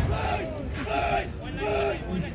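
Men shouting loudly in three drawn-out calls as a rugby maul is driven, the raw yells of players or supporters urging it on.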